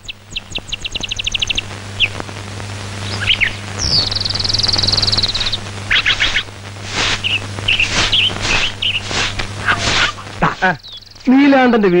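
Birds calling: a quick run of high chirps at the start, a fast high trill about four seconds in, then scattered calls, over a steady low hum. A man's voice begins near the end.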